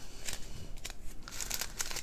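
Small plastic zip bags of diamond-painting drills crinkling as they are handled, in a run of irregular light crackles.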